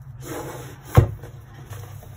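A cardboard product box rubbing against hands and the desk as it is turned over, then set down with one sharp thump about a second in.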